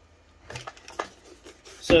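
A few light clicks and knocks from the case of a General Dynamics GD8000 rugged laptop as it is picked up and tilted by hand.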